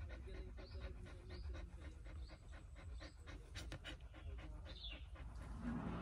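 A mother dog that has just given birth panting with quick, even breaths. A few faint high chirps come now and then.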